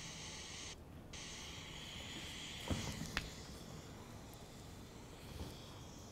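Faint, steady jet-engine hiss from an airliner landing video played over the room's speakers. It starts abruptly, cuts out briefly just under a second in, then resumes and fades. Two short knocks come about half a second apart near the middle.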